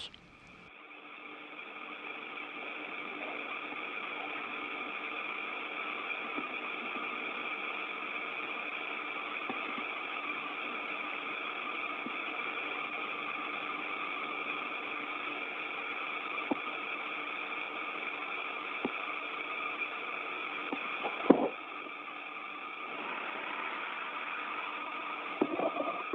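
Steady hiss and hum of an open, narrow-band radio link from the spacecraft, with faint steady tones. There is a sharp click about 21 seconds in and a few faint ticks near the end.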